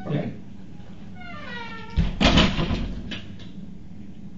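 An interior door swinging shut: a brief falling squeak, then a heavy thud as it closes about two seconds in, followed by a few faint clicks of the latch.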